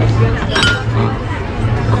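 Diners' chatter with a sharp clink of tableware, a metal spoon on a ceramic dish, about half a second in, over a steady low hum.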